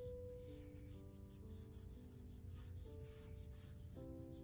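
Faint background music of slow, held notes, with the light scratch of a pencil sketching on paper.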